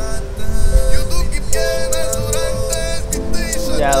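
Lithuanian hip-hop track playing: held synth notes over a beat with a fast, steady ticking rhythm.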